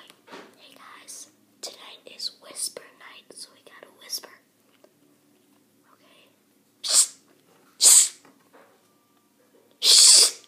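A boy whispering, then after a pause three short, loud shushes, the last with a finger held to his lips.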